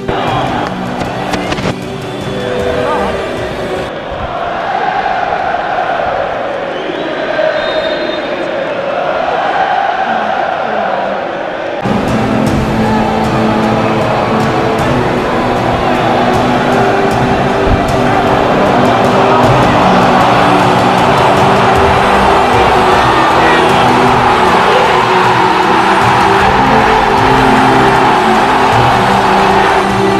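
Background music over a football stadium crowd. The crowd is singing in the middle, then a loud roar of cheering starts suddenly about twelve seconds in and swells.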